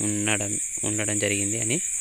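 A man speaking Telugu, with a steady high-pitched hiss running underneath the voice.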